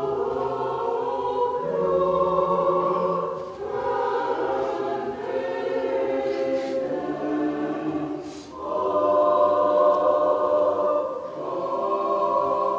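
Russian Orthodox church choir singing a Christmas hymn unaccompanied, in sustained chords phrase by phrase, with short breaks about a third and two-thirds of the way through.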